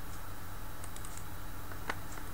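Computer keyboard keys tapped a few times, faint short clicks over a steady low hum.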